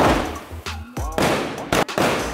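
Aerial firework shells bursting with sharp bangs: a loud one at the start, another about a second in, and two close together near the end. Background music plays under them.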